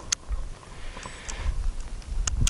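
Low, gusty rumble of wind buffeting the microphone in an open snowy field, with one sharp click just after the start.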